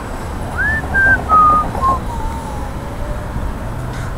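A person whistling a short falling tune of about five notes, each a little lower than the last, about half a second to two and a half seconds in. Steady street rumble underneath.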